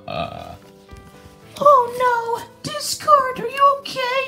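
A person voicing puppet characters with a short rough grunt at the start, then two drawn-out, high-pitched wavering vocal cries, over background music holding steady tones.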